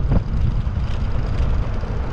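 Wind buffeting the microphone and tyre rumble from an electric scooter riding fast over a concrete sidewalk: a loud, steady, low rumble, with one faint click just after the start.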